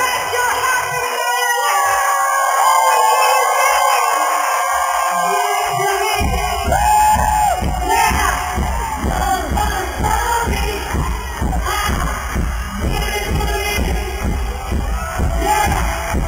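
Live pop concert music from the arena PA, heard from within the audience, with the crowd cheering. About six seconds in, a heavy bass beat kicks in.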